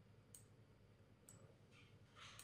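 Near silence: room tone with two faint, short clicks about a second apart, and a faint breath near the end.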